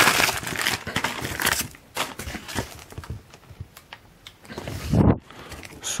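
Clear plastic packing wrap crinkling and crackling as hands rummage through it, densest in the first second and a half, then in scattered crackles. A low bump comes near the end.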